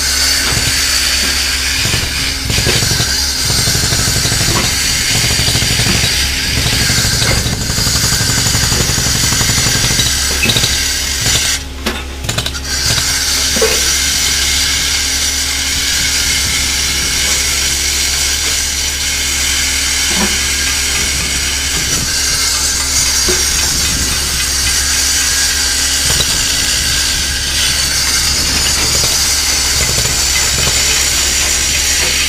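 Mini excavator's diesel engine running steadily under load as it lifts a cut concrete pile head up off its reinforcing bars, with a brief drop in level about twelve seconds in.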